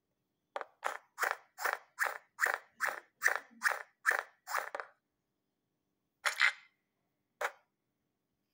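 A quick, even run of about a dozen sharp taps, roughly two and a half a second, then a pause and two more single taps near the end.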